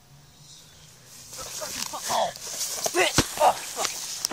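A person falling and tumbling down a grassy slope close to the microphone: grass rustling and scuffing, short wordless cries and grunts, and a sharp thud about three seconds in. It starts about a second in.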